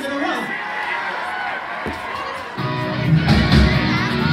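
Crowd shouts and a guitar ringing between songs, then about two and a half seconds in a loud punk rock band of electric guitars, bass and drums starts playing a song.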